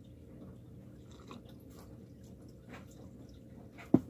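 A person drinking from a mug: faint gulping and mouth sounds, then one sharp knock just before the end.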